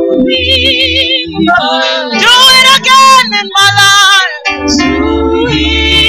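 Women singing a worship song into microphones, held notes wavering with vibrato, over low sustained bass notes from the accompaniment.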